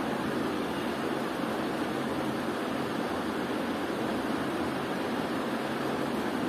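Steady hiss with a faint low hum, unchanging throughout and with no distinct sounds standing out.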